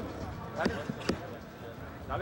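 Two sharp knocks about half a second apart over background voices.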